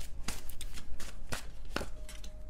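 A deck of tarot cards being shuffled by hand: a string of short, sharp card snaps, about seven in two seconds.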